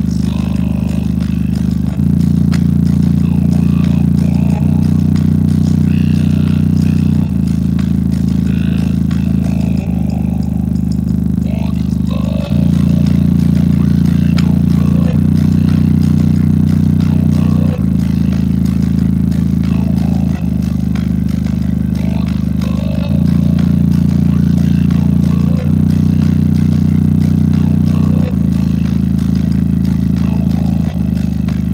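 JBL Charge 4 Bluetooth speaker's woofer playing a bass test track at 94% volume in low frequency mode, driven to hard excursion: deep held bass notes that change pitch about every two and a half seconds, with a rattling buzz on top.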